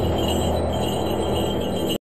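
Dark, dramatic background music with sustained held tones, cutting off suddenly at the end.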